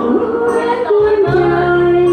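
A woman singing a Thai song over a karaoke backing track, holding long sung notes that step to a new pitch about a second in.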